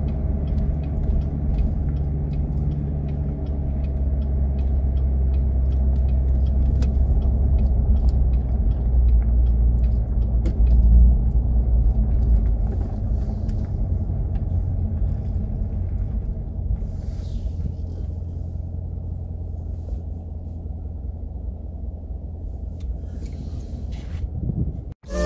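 2017 Corvette Grand Sport's 6.2-litre V8 running at an easy cruise, heard from the open-top cabin as a steady low engine and road rumble. The engine's hum is clearest in the first few seconds, then blends into the rumble, which swells briefly about halfway through.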